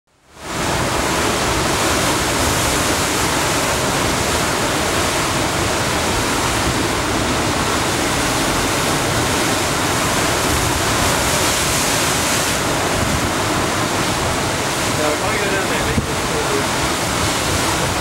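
Ocean surf breaking and churning over a rocky shore: a continuous, dense wash of white water at a steady level.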